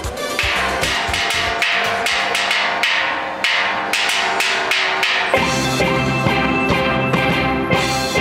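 Steel band playing: a steady percussion rhythm at first, then a fuller sound with deep bass notes joining about five seconds in.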